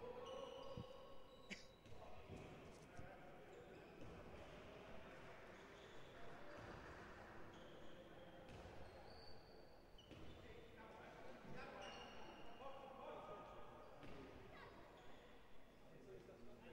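Faint indoor sports-hall ambience: distant voices and a ball bouncing on the court floor.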